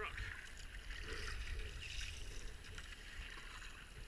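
Kayak paddle blades dipping and pulling through the river water in a few soft splashes, over the steady wash of water along the hull and a low rumble on the camera microphone.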